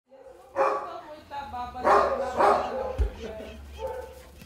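A dog barking several times in short bursts during play.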